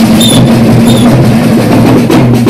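Loud drumming in a dense wash of sound over a steady low drone, with two short high whistle-like tones in the first second.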